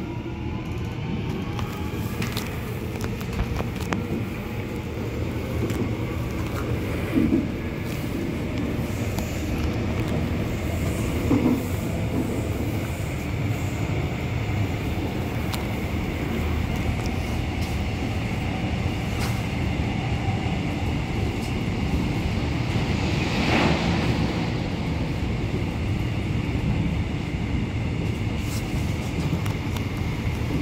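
Busan Metro Line 1 subway train heard from inside the passenger car while running between stations: a steady low rumble of wheels and motors. Near the start a rising whine comes from the traction motors as it picks up speed, and occasional sharp knocks come from the running gear.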